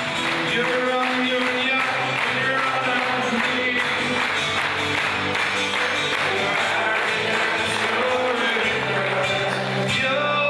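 Live acoustic folk music: a steel-strung cittern strummed in a steady rhythm, with a harmonica playing held notes over it.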